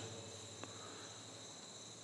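Faint, steady high-pitched trilling of crickets, over a low hum, with one soft click just over half a second in.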